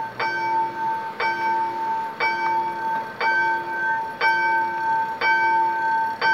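Level crossing warning bell ringing about once a second, each stroke a steady tone of a few pitches that holds until the next, signalling that a train is at or approaching the crossing.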